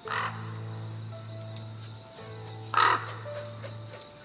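A crow cawing twice, about two and a half seconds apart, over background music with steady sustained low notes.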